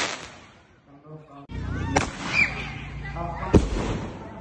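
Five-shot Roman candle firing: a sharp pop about two seconds in and another about three and a half seconds in, with people's voices around it.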